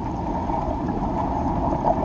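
Steady low rumbling noise of a boat out on open water, motor and water sounds blended together without a clear pitch.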